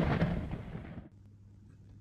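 Rolling thunder dying away over about a second into quiet.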